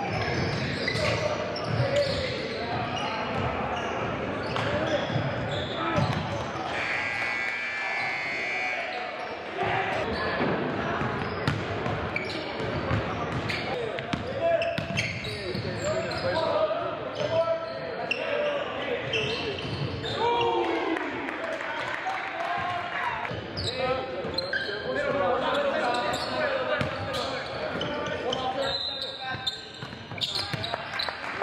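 Basketball game sounds in a large gym: a ball bouncing on the hardwood floor amid indistinct players' and spectators' voices, all with hall echo. A brief high squeal comes about a quarter of the way in.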